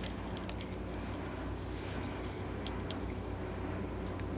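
Steady low background hum of the room, with a few faint ticks.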